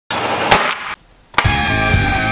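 A fountain firework hissing as it sprays sparks, with one crack, cut off short after about a second. After a brief silence, heavy-metal music with electric guitar comes in on a hit.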